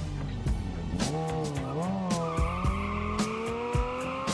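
Sport motorcycle engine revving hard through a burnout, its pitch wavering and then climbing steadily, with the rear tyre squealing as it spins on the asphalt. Music with a steady beat plays underneath.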